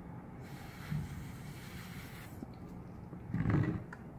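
Breath blown through a drinking straw onto wet resin to push it into cells: a long airy hiss of blowing lasting nearly two seconds, then a louder, deeper puff of breath near the end.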